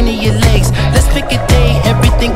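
A pop song with a steady beat and a bass line, laid over the picture as background music.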